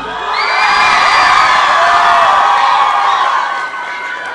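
Audience cheering and screaming in many high voices as the song ends, growing louder about half a second in and easing off near the end.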